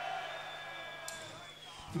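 Low-level live concert room sound between songs: a faint crowd and steady tones ringing from the stage amplification, with a short click about a second in.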